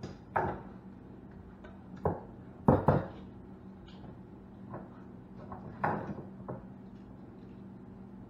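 Objects being handled and set down on a wooden workbench: a series of sharp knocks and clatters, the loudest a pair about three seconds in and another near six seconds, over a steady low hum.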